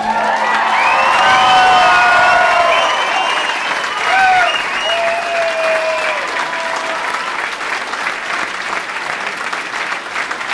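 Audience applauding and cheering as a live folk song ends, with whoops and shouts above the clapping. The shouts die away after about seven seconds, leaving steady applause.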